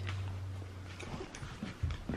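Dogs nosing about for treats on a wooden floor: a few faint clicks and soft sounds from the dogs. A low steady hum fades out within the first second.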